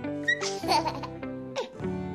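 Background music with plucked, guitar-like notes, and a short baby's giggle over it about half a second in.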